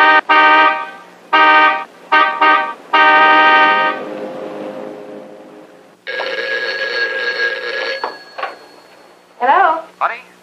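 Car horn honked in a quick run of short blasts, ending with a longer blast of about a second. About six seconds in, a telephone bell rings once for about two seconds.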